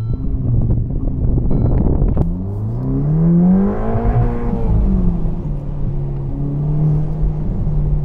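Ferrari Roma Spider's 3.9-litre twin-turbo V8 pulling away, heard from the open cabin. The engine note rises for about two seconds, drops back, then settles to a steady drone.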